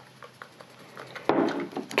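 Faint, scattered clicks of a plastic straw stirring a powdered collagen drink in a glass, which is not dissolving well in cold water. Near the end there is a sharper click, then a short vocal sound.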